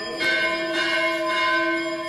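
A bell rings, pulsing about twice a second, over a steady drone note, while the nadaswaram melody pauses.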